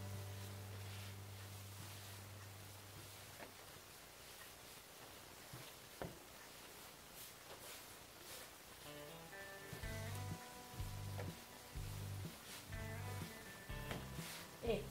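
Quiet background music: a held low note fades out, and about nine seconds in a stepping bass line with sustained higher notes begins. A few faint knocks come through, likely from dough being kneaded by hand on the table.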